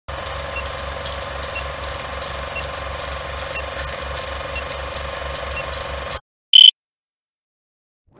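Film-projector countdown sound effect: a projector running with a rhythmic mechanical clatter, crackle and a faint tick each second. It cuts off suddenly about six seconds in, followed by one short, loud, high-pitched countdown beep.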